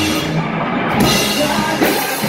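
Live rock band playing: electric guitars, bass and drum kit. The cymbals drop out briefly, then the full kit crashes back in about a second in.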